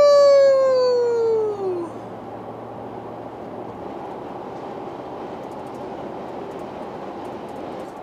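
A man's long whooping "woo", held and then falling in pitch, dying away about two seconds in. After it, steady road noise inside a vehicle cab at highway speed.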